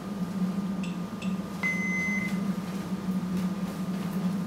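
Steady low electrical or ventilation hum in a room, with two faint short chirps about a second in, then a single short electronic beep of about half a second.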